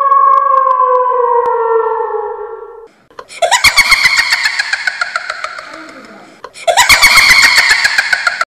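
Cartoon monster and zombie vocal sound effects: a long high cry that slowly falls in pitch and fades out about three seconds in, then two loud, rapidly stuttering cries, each falling in pitch.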